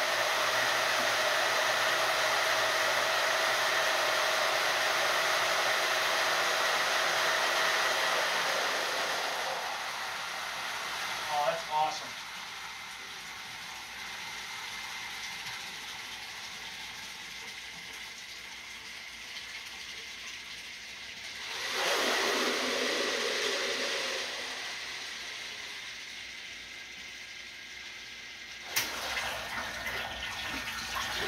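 Water gushing from a hose into a plastic drum, driven by a stainless centrifugal pump on a variable-frequency drive, with a steady high whine under it. The flow drops back about a third of the way in, swells again about two thirds of the way in, then eases off as the pump speed is turned down. A brief knock comes near the end.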